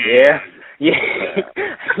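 Speech only: voices in a talk discussion, one answering 'yeah'.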